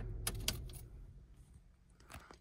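Ford Bronco Sport being switched off: a couple of sharp clicks from the controls, then the engine's idle hum dies away over the next second or so.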